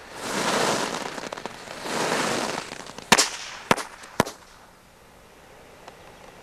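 Small firecrackers going off on gravel: two bursts of hissing, then three sharp bangs about half a second apart.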